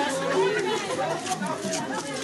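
Crowd chatter: several people talking at once, with no single voice standing out.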